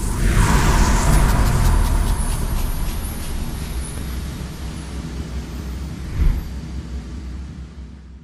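Cinematic explosion sound effect for an animated logo reveal: a deep fiery rumble with a whoosh that slowly dies away, with a second thump about six seconds in.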